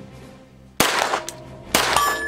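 Two 9mm shots from a CZ Scorpion EVO S1 pistol, about a second apart, each with a short ring-out, over background music.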